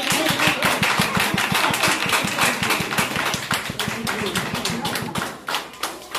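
A group of people applauding, a dense run of hand claps that thins out near the end.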